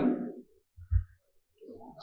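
A man's speech trailing off into a pause, broken about a second in by one brief low thump, with faint low sounds near the end.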